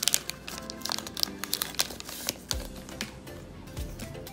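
Foil Pokémon card booster-pack wrapper crinkling as the cards are slid out of it, with background music playing.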